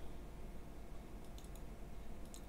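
A few faint computer-mouse clicks in the second half, over a low steady room hum.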